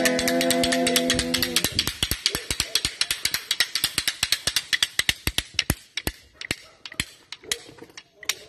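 A wooden clapper rattle (matraca) shaken in a fast, even clacking of about eight clacks a second, thinning out and fading after about five seconds. A held chord sounds under it and stops about a second and a half in.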